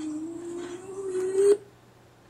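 A child's long whining vocalisation held on one pitch, rising slightly, then cut off abruptly about one and a half seconds in: the vocal stimming of an autistic boy, played back from a video through a computer speaker.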